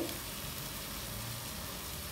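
Onion and tomato masala sizzling softly in a frying pan, a steady, even hiss.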